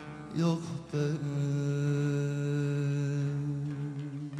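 A male folk singer's voice slides down briefly, then holds one long sustained note that fades near the end, over bağlama (Turkish long-necked lute) accompaniment.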